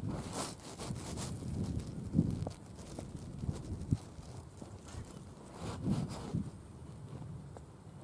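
Wind rumbling and gusting on the microphone in an open field, with two short, sharp knocks about two seconds and four seconds in.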